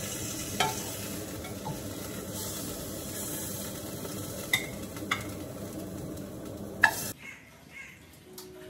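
Chicken pieces sizzling as they fry in a non-stick saucepan on a gas hob, with about five clinks of metal tongs against the pan as they are stirred. The sizzling cuts off suddenly about seven seconds in.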